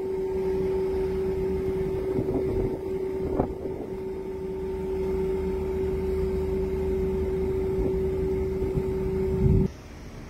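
Boat engine droning with a single steady hum over low rumbling noise, cutting off suddenly near the end.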